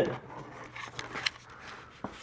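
A few faint clicks and light rustling over quiet room tone, mostly about a second in.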